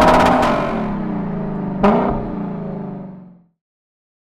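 Intro logo sound sting: a sustained droning sound of several stacked tones, with a sharp hit about two seconds in, fading out and ending in silence.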